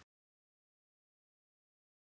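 Silence: the sound track is empty, with not even room tone.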